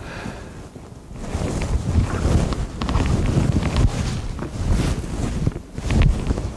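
Irregular low rumbling and rustling noise on the microphone, the kind made when clothing rubs against the mic as the wearer moves his arms.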